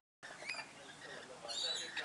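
A flock of rainbow lorikeets chattering as they feed, a steady jumble of short high squeaks and chirps, with one louder shrill screech about one and a half seconds in. The sound starts just after a brief silence at the very beginning.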